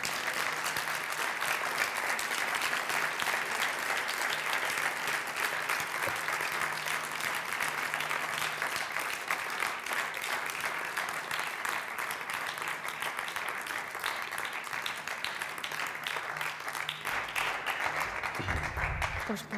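Audience applauding: dense, steady clapping from a large audience, sustained without a break.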